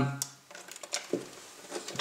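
Faint handling noise from hands placing a servo and its wire lead in a model boat's hull: a sharp small click, then light rustling and another soft click.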